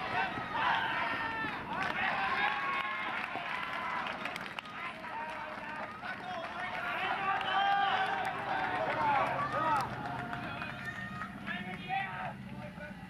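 Several players' voices shouting and calling out across a baseball field, overlapping almost continuously through a bunt play.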